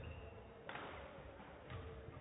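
Quiet sports-hall ambience with a low hum, broken by two short knocks about a second apart, the first louder and ringing on briefly in the hall.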